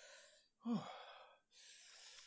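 Soft, heavy breathing from a person fighting the burn of a Carolina Reaper-infused peanut: an exhale, a short falling "ooh" under a second in that trails off into breath, then another long breath out near the end.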